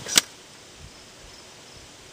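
A single sharp click of metal parts being handled inside an old transformer welder's cabinet, followed by quiet outdoor background.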